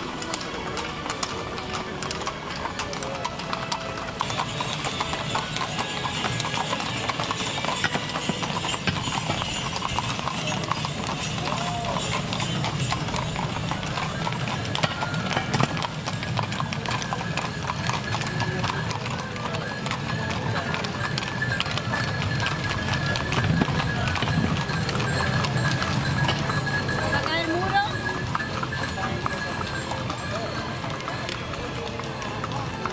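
Hooves of several carriage horses clip-clopping on an asphalt road as they trot and walk past, a steady stream of overlapping hoofbeats.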